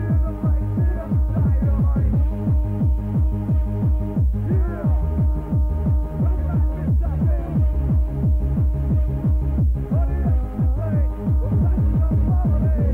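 Electronic dance music from a cassette recording of a live DJ mix: a steady beat of deep bass hits with sliding bass notes under synth melody lines.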